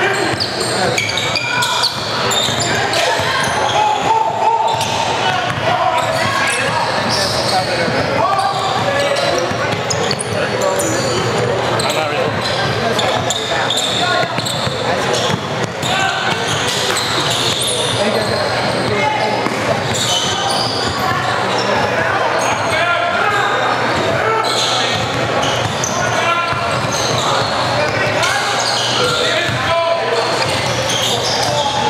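Game sounds on a hardwood basketball court in a large gym: voices of players and onlookers echoing in the hall, with a basketball bouncing off the floor.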